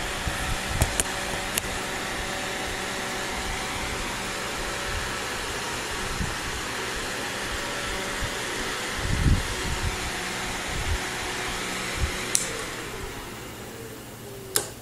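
Giant computer fan cooling an LED heatsink, running steadily with a low hum underneath. There are a few low knocks about nine seconds in, and a click near the end, after which the fan noise fades away.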